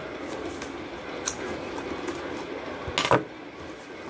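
A knife blade scraping and slicing along the tape and cardboard of a shipping box, with faint clicks, then one sharp knock about three seconds in as the box or blade is handled.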